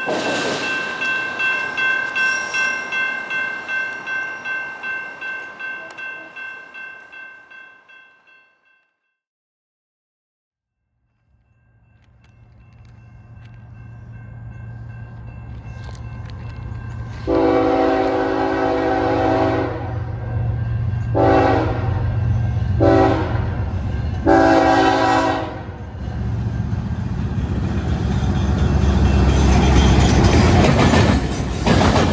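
A passing freight train's rumble fades out, then a silent gap. A BNSF diesel locomotive approaches with its engine drone building, sounds its horn in four blasts (a long one, two short, then a longer one), and passes close by.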